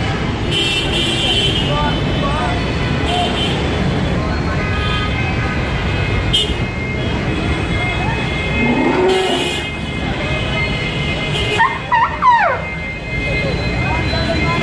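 Busy city street traffic: a constant rumble of vehicles with crowd chatter, broken by several short car horn blasts. About twelve seconds in comes the loudest sound, a brief one that rises sharply in pitch.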